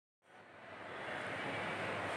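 Steady background noise of a large shopping mall interior, fading in from silence just after the start.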